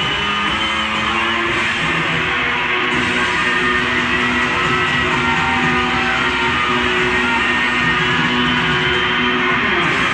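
Live rock band playing on stage, with electric guitar to the fore over bass and drums; the music is steady and loud throughout.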